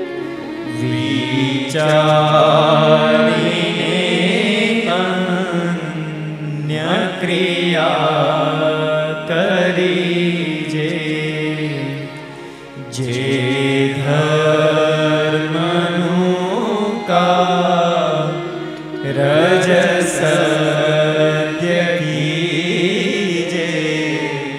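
A male voice singing a devotional chant in long, wavering held notes, in phrases of about six seconds with brief pauses between them.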